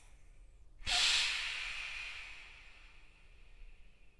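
One long breath drawn through a PowerLung breathing trainer against its adjustable resistance: a hiss that starts about a second in, loudest at its onset and fading away over about two seconds.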